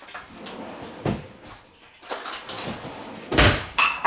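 Kitchen handling noises: a knock about a second in, a rustle, then a heavy thump near the end followed by a brief ringing clink, as a door or container is worked and a bowl is fetched.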